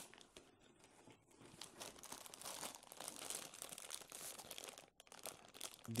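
Quiet crinkling of thin clear plastic bags holding cables as they are handled, an irregular crackle that builds a second or so in and eases off shortly before the end.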